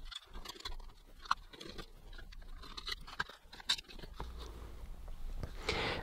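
A T15 Torx screwdriver backing small screws out of a plastic fan housing: faint, irregular clicks and scrapes, with a sharper click about a second in and another near four seconds.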